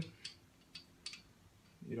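Four faint, light clicks over about a second as the fill cap and its rubber grommet on the LSA supercharger's aluminium lower case are handled.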